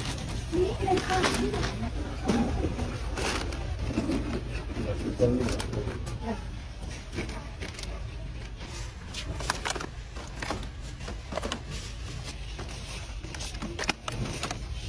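Plastic produce bags crinkling and clear plastic clamshell fruit packs clicking and knocking as groceries are set into a wire shopping cart, over a steady low hum. Muffled voices are heard in the first few seconds.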